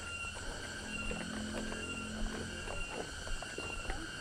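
Quiet outdoor ambience: a steady, high-pitched insect chorus with a few faint footsteps and small clicks.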